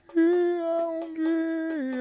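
A lone male voice humming a long wordless held note with no drums behind it, stepping down to a lower held note near the end.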